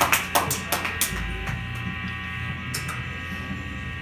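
A few scattered claps in the first second, then a steady electric hum and buzz from the stage amplifiers idling between numbers.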